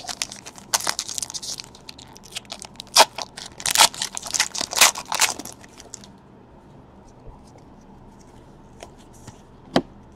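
A trading card pack wrapper being torn open and crinkled by hand: a run of rustling, tearing bursts for about five seconds, then only a few faint ticks.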